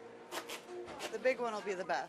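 A few faint clicks and rustles, then quiet talking starts a little over a second in.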